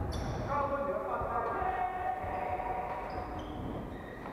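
Badminton shoes squeaking on a wooden court floor in a large echoing hall: a few short, high squeaks near the start and in the last couple of seconds. Voices chatter alongside.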